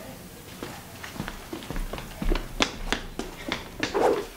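Footsteps on a hard floor: a quick run of sharp steps, about three a second, growing louder in the second half.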